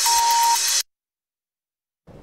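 Electronic ident jingle of a TV news programme, with a held high tone over a busy beat, cutting off abruptly under a second in and leaving dead silence.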